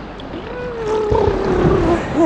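Water sloshing and gurgling against a camera at the sea surface, with a long droning tone that slowly falls in pitch from about half a second in.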